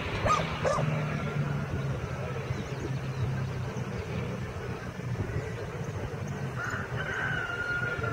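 Distant paramotor engine running with a steady low drone as the craft flies away. Two short high yelps come within the first second, and a thin steady whine appears near the end.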